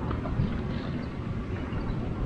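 Low, steady outdoor rumble with no distinct events.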